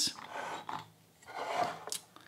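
Porcelain gaiwan lids being handled on a bamboo tea tray: a soft scraping rub, a brief pause, then another rub ending in a light clink near the end.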